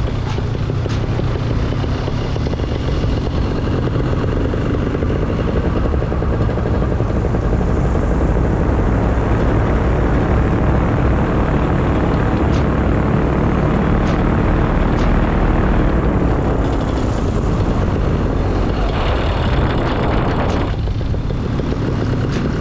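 Paramotor engine and propeller droning steadily in flight. The sound grows fuller for several seconds midway, then eases back.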